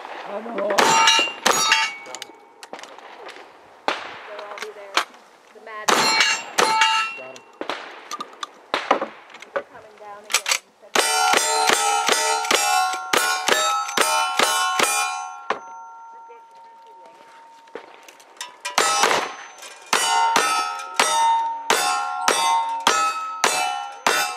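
Gunshots from a lever-action rifle and single-action revolvers, each followed by the ringing clang of a steel plate target being hit. The shots come in separate strings. A long quick run of rifle shots falls in the middle, and a fast run of revolver shots comes near the end.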